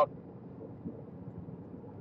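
Low steady background noise with no distinct sounds, a faint even hum.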